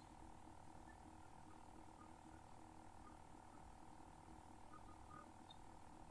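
Near silence: faint steady room tone with a low electrical hum.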